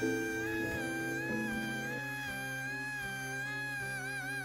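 A male singer holding one long, high note, steady in pitch, over acoustic band accompaniment whose chord changes about halfway through.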